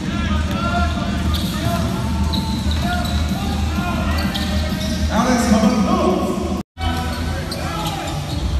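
Basketball court sound: a ball bouncing and sneakers squeaking on the hardwood, with voices and music underneath. The sound drops out for an instant near the end at an edit cut.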